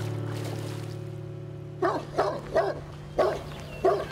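A Great Dane barking: five deep single barks in the second half, roughly half a second apart, over a low held music chord that slowly fades.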